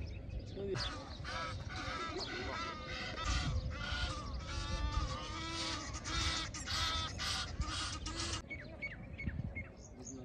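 A crowd of waterbirds calling together, many loud pitched calls overlapping almost without a break, stopping abruptly near the end, followed by a few short chirps. A low rumble runs underneath.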